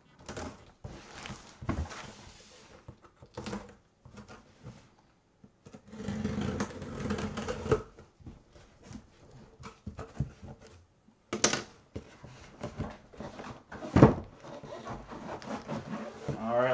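A cardboard box being opened by hand: the sealing tape across the top is cut and pulled free and the cardboard flaps are folded open, giving irregular scraping and rustling with a few sharp knocks.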